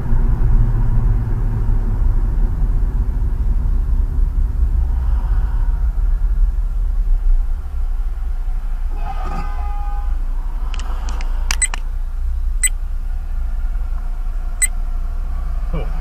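Low rumble of a car's engine and road noise inside the cabin, picked up by a dashcam microphone. It eases about halfway through as the car slows to a stop. A few sharp clicks come in the second half.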